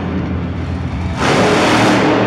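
Monster truck engine running, then opening up with a loud burst of throttle a little past halfway as the truck pitches up onto two wheels, over arena music.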